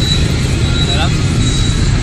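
Steady low rumble of street traffic, with a brief fragment of a man's voice about a second in.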